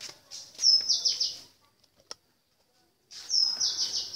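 A bird calling twice, each call a quick run of high, bright notes stepping down in pitch. A single sharp click falls between the two calls.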